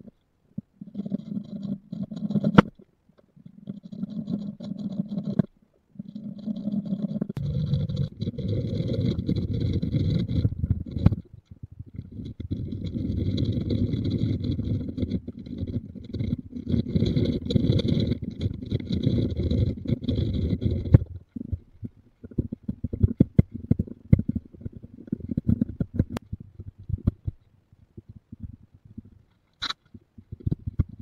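Electric drill boring into oak to clear the waste for a mortise, running steadily in several stretches, longest from about 7 to 21 seconds. After that come irregular scrapes and knocks of hand-tool work on the wood.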